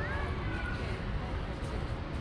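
Outdoor street ambience: distant voices over a steady low rumble of traffic and wind.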